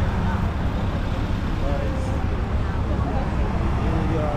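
City street noise: a steady traffic rumble with indistinct voices of people nearby.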